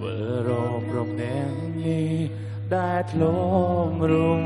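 A live pop song: a woman sings held, wavering notes over electric guitar and a steady bass line.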